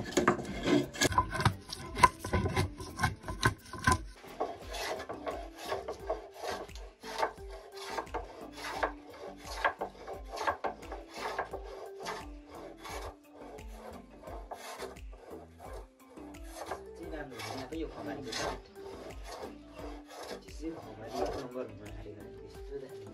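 Wooden hand plane shaving along a wooden plank in quick, repeated rasping strokes, louder for the first few seconds and then quieter.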